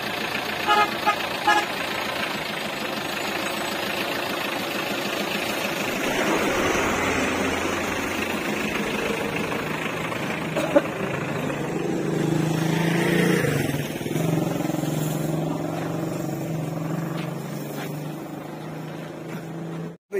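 A vehicle running close by, with a few short horn toots about a second in, over a steady noisy background that carries a low hum in its second half.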